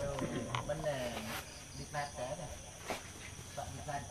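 Indistinct voices of people chatting in the background, with a steady high chirring of night insects and a couple of light clicks.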